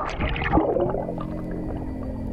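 Water sloshing and splashing around a camera at the sea surface, then soft background music with long held notes coming in about a second in.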